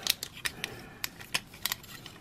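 Irregular small clicks and taps, several a second, from the plastic and diecast parts of a Bandai Digivolving Spirits Agumon/WarGreymon transforming figure as it is worked by hand and its tabs are pressed into alignment.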